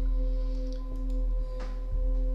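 A steady drone of several held tones over a low hum.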